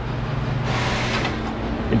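A steady low machine hum, with a short rush of hiss-like noise about halfway through.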